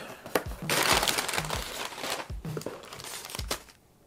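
Crumpled kraft packing paper crinkling and rustling as it is pulled out of a cardboard shipping box. It is loudest for about a second and a half early on, then quieter, with a few light knocks.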